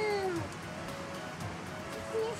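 A tabby cat gives one short meow that falls in pitch, right at the start.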